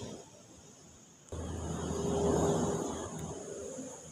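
A motor's steady low hum starts suddenly about a second in, swells, then fades away.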